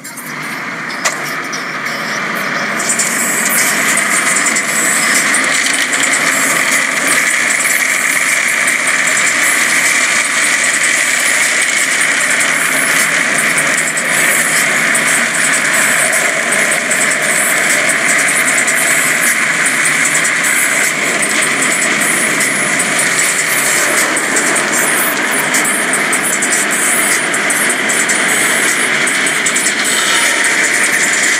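D&S IQ soft-touch automatic car wash spraying water and foam over the car, heard from inside the cabin: a steady rushing that builds over the first few seconds, then holds.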